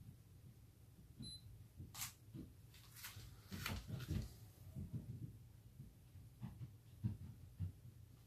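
Faint clicks and small handling noises from a mirrorless camera being worked by hand, over a low steady hum, with a few sharper clicks about two, three and three and a half seconds in.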